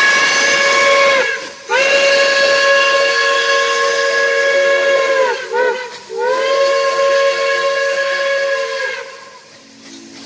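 Chime steam whistle of Iowa Interstate QJ 2-10-2 No. 6988, sounded in long blasts with one short blast between the last two: the end of a long, then a long, a short and a final long, the grade-crossing signal. Each blast sags in pitch as it shuts off.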